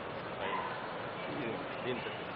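Faint, indistinct voices over a steady background hiss of room noise.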